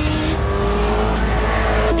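Sports motorcycle engine running at high revs, its pitch rising slowly as it accelerates.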